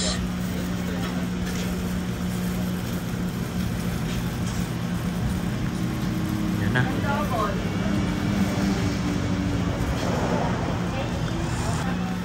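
A steady low hum with one constant low tone throughout, and indistinct voices briefly about seven and ten seconds in.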